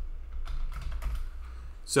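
Computer keyboard keys clicking in a short run of separate keystrokes as code is typed, over a steady low hum.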